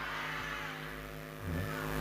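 A steady, held musical tone through the stage PA, slowly fading, in the gap between sung lines of a song with band accompaniment.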